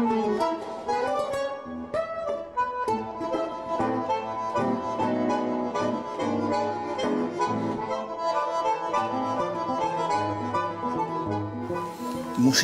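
Bandoneon and acoustic guitar playing a duet: the bandoneon's sustained reedy notes and chords over plucked guitar accompaniment.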